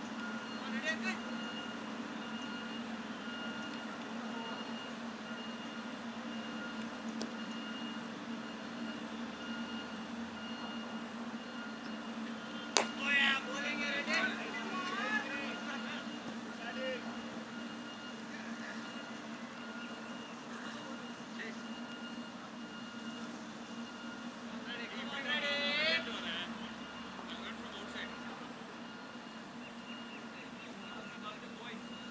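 A single sharp crack of a cricket bat striking the ball about 13 seconds in, followed by players' shouts, over a steady low hum. More shouting comes near the end.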